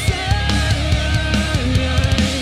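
A heavy live band playing electric guitars, bass guitar and drum kit, with a guitar line bending and sliding over dense drumming.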